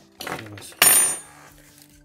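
Clatter of small hard plastic and metal parts as a smartphone's housing is unclipped and handled, with one loud sharp clack about a second in.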